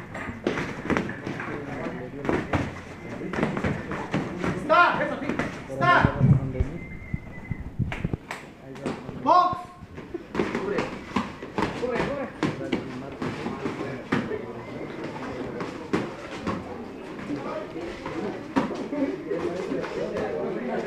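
Boxing gloves landing punches on bodies and headguards during sparring, with irregular knocks and thuds and feet shuffling on the canvas mat. Voices in the gym call out over it, with a few short shouts.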